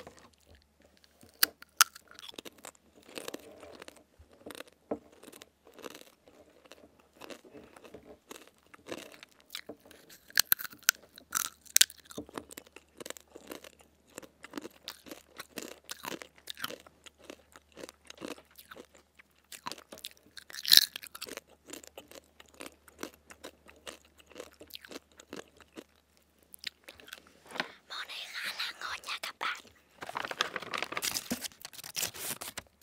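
Close-miked ASMR eating of crunchy dried sweet potato chips: many small bites and chewing crunches, with one loud bite snap about two-thirds of the way through. Near the end comes a denser rustle, the plastic snack bag being handled.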